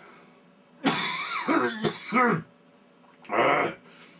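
A man coughing and clearing his throat in two bouts: a longer, partly voiced one about a second in, and a short cough near the end.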